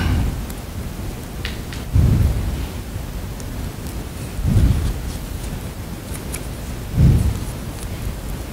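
Slow, heavy breathing close to the microphone: a low puff of air about every two and a half seconds over a steady hiss, with a few faint clicks.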